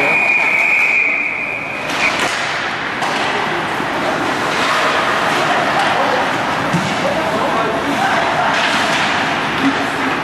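A referee's whistle blows one long, steady, high note lasting about two seconds, calling a penalty. After that come spectators' voices and general rink noise with a few light knocks.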